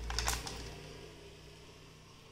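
A few light clicks with a low handling rumble in the first half second as earrings are hung on a display bust. Faint room tone follows.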